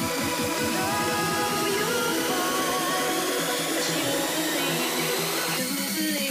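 Hard house track in a breakdown. The driving kick-drum beat drops out about a second in, leaving held synth chords under a rising white-noise sweep, a build-up toward the next drop.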